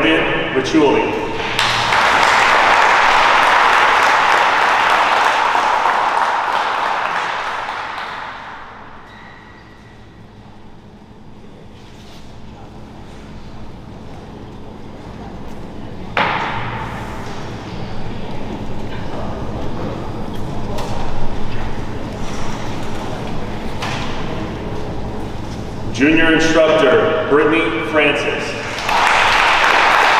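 An audience applauding in a large hall. The clapping swells just after a name is called, fades out, and then a second round starts suddenly about halfway through. A man's voice over a microphone is heard at the start and near the end.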